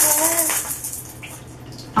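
Bath water splashing and dripping in a bathtub, loudest in the first half-second and then fading to a quiet trickle.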